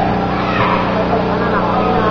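Basketball game sounds in a gym: a steady din of spectators' voices over a constant low hum, with the brief, bending squeaks of players' shoes on the court.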